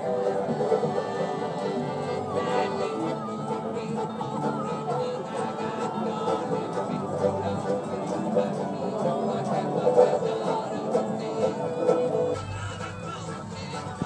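Acoustic street band of fiddle, banjo, accordion and banjo-bodied guitar playing a folk tune together, thinning out and getting quieter near the end.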